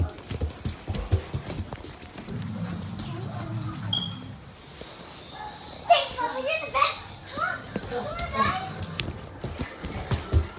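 Children playing indoors: knocks and thumps of movement on a wooden floor in the first couple of seconds, then a low rumble, then a child's wordless shouts and squeals in the second half.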